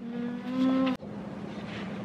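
A woman's held 'mmm' hum at a steady pitch for about a second, cut off suddenly.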